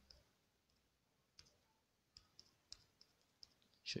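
Faint, irregular clicks of typing on a smartphone's on-screen keyboard, about eight taps spread over the few seconds, with a voice starting at the very end.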